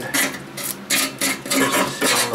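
A hand tool scraping the rusty steel pan of a tractor seat, several quick scraping strokes in a row.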